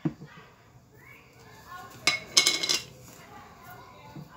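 Kitchen utensils clinking: a sharp click at the start, then a brief ringing clatter about two seconds in.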